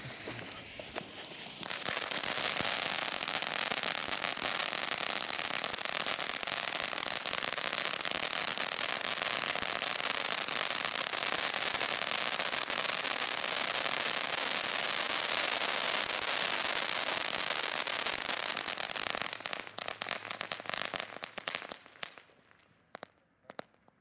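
Pyrotrade Vulkan 100 crackling fountain firework burning: a hiss of spraying sparks for the first couple of seconds, then a dense, loud crackling of many small crackling stars going off at once. Near the end it thins into scattered crackles and dies out.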